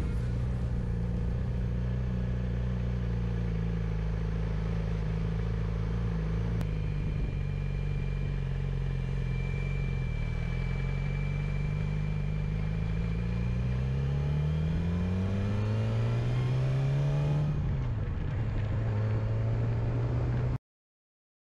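A vehicle engine running at steady low revs, then climbing in pitch as it accelerates, dropping abruptly once as it shifts up, and climbing again.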